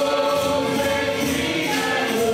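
Men's voices singing a gospel hymn through a microphone, holding long notes, over a percussion group with tambourine.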